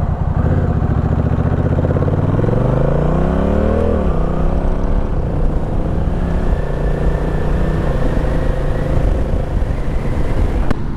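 Honda Rebel 1100 DCT's parallel-twin engine accelerating hard, its pitch climbing for about three seconds and then dropping sharply as the dual-clutch transmission upshifts on its own. A few smaller upshifts follow as the bike settles to a steadier pull.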